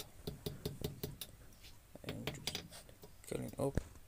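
Hand hammer striking car-spring steel on an anvil in a quick run of blows, about three a second, forging a small curl on the end of a bottle opener.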